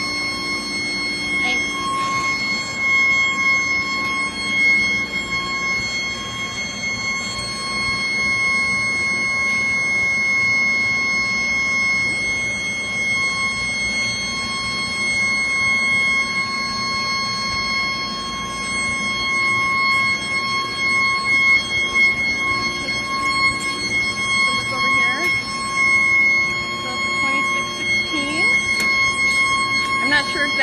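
Induction melting furnace running: a steady high-pitched hum with overtones above a constant rushing shop noise.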